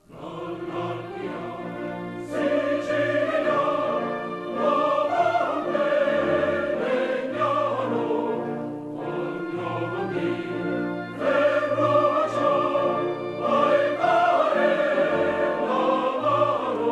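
Classical choral music: a choir singing sustained phrases over an orchestra.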